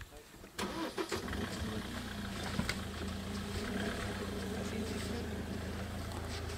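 A vehicle engine starts about half a second in, with a short, uneven burst at the start, then settles into a steady idle.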